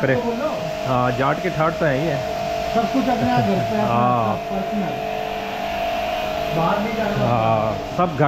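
Electric pressure washer running with a steady motor whine while its spray gun jets water onto a car's bodywork. A man's voice talks over it at times.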